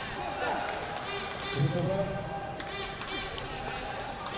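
Indoor sports-hall sound between rallies of a sepak takraw match: shoe squeaks on the court floor, players' voices and scattered knocks, echoing in a large hall, with a louder thud about one and a half seconds in.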